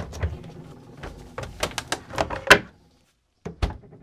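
A quick run of sharp clicks and knocks, the loudest about two and a half seconds in, then a sudden cut to silence and a single low thump near the end.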